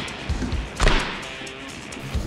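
Background music with two thuds of boxing gloves striking during sparring, the louder and sharper one just under a second in.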